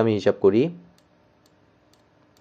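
A man speaks a last word of Bengali, then it goes quiet except for a few faint clicks from the computer pointing device he is handwriting with on screen.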